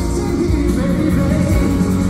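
Live pop concert music over an arena sound system, loud with heavy bass and a sung melody, heard from among the audience.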